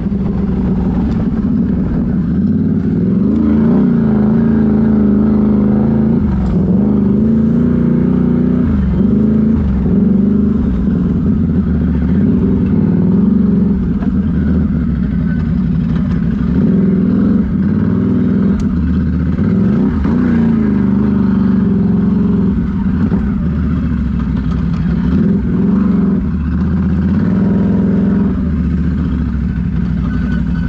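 Can-Am Renegade XMR ATV's V-twin engine running under way on a gravel trail, its pitch rising and falling several times as the throttle is opened and eased off.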